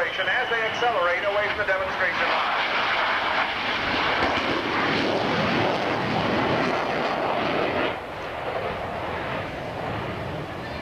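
Two CF-101B Voodoo jet fighters, each with twin Pratt & Whitney J57 afterburning engines, passing low with afterburners lit: a loud jet roar builds about two seconds in, holds, then falls off sharply near eight seconds.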